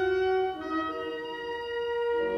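Orchestra playing sustained chords, the harmony changing about half a second in.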